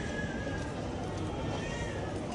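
Steady background noise of an airport terminal concourse, with a faint high tone wavering through it.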